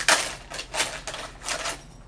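Foil blind bag crinkling in the hands as it is torn open, in several short rustling bursts.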